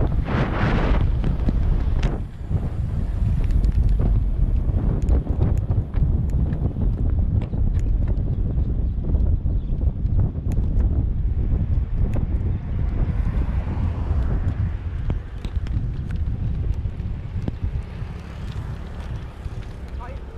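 Wind buffeting the microphone of a camera on a moving road bike, with a heavy low rumble from the ride and scattered small clicks and rattles. It eases off over the last few seconds.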